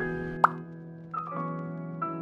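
Light keyboard background music with sustained piano-like notes, broken about half a second in by a single short, loud 'plop' editing sound effect, a quick upward pitch blip.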